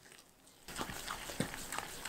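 A plastic spatula stirring a thick glutinous rice flour dough in a glass bowl, scraping and clicking against the glass in quick repeated strokes. The stirring starts about two-thirds of a second in.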